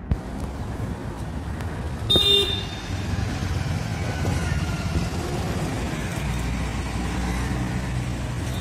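Steady street traffic rumble, with a short car-horn toot about two seconds in.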